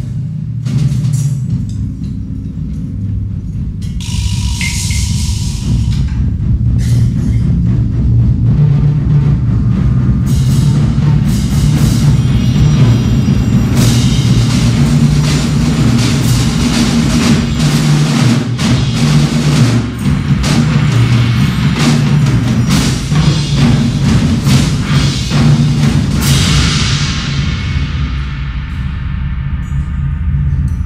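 Live percussion ensemble playing loudly: a sustained low drum and timpani rumble under fast, dense drum strokes that build from about ten seconds in, with a bright swell about four seconds in and another rising near the end.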